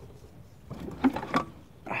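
Cylinder head of a Renault Clio petrol engine being lifted off the block: a short run of metal knocks and scraping about a second in. A brief spoken "ah" comes right at the end.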